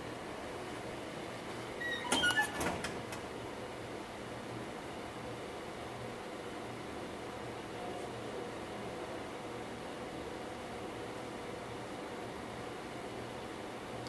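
Dell PowerEdge 840 server running through its boot, its cooling fans giving a steady hum with a faint constant tone. A short louder noise comes about two seconds in.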